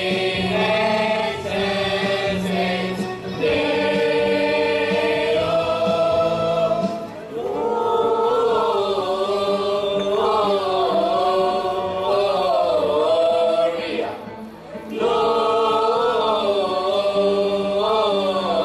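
Mixed choir of men and women singing a Christmas carol a cappella in three-part harmony. The chords are held in long phrases, with brief breath breaks about seven and fourteen seconds in.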